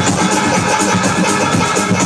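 Loud techno played over a nightclub's sound system, dense and continuous.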